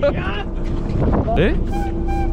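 Fishing boat's engine running steadily with a constant hum, with wind buffeting the microphone.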